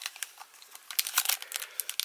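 Foil booster-pack wrapper crinkling as fingers grip and work its crimped top seam: a scatter of sharp little crackles that gets busier about a second in.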